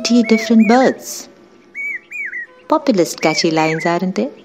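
Common hawk-cuckoo calling: short whistled notes that rise quickly and then drop, two of them clear on their own about halfway through. A person's voice, louder, runs under them in the first second and again near the end.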